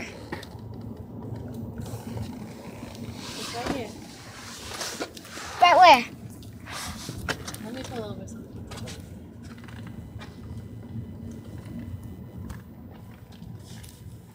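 Steady low rumble of a car cabin while driving, engine and road noise, with a few short bursts of voice, the loudest about six seconds in.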